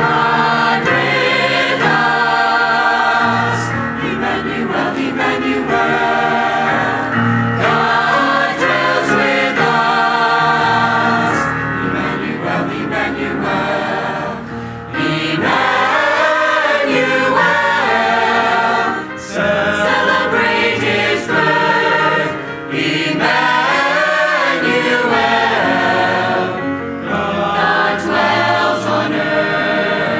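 Mixed church choir of men's and women's voices singing, in long phrases with a few brief breaks between them.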